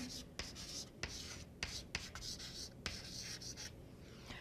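Chalk writing on a blackboard, faint: a run of scratchy strokes with short breaks between them.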